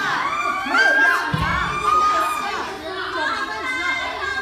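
Several young dancers crying out in pain at once during forced split stretching: overlapping high-pitched wails and shouts, one cry held long through the middle. A brief low thump about a third of the way in.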